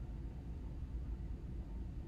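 Quiet room tone: a steady low hum with faint hiss and no distinct sounds.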